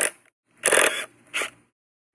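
Cordless drill/driver running in two short trigger pulses, driving a screw into a wooden board: a half-second run about half a second in, then a brief final pulse.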